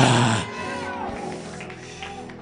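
A man's low, drawn-out shout through a microphone, fading out about half a second in, followed by steady held chords of background music.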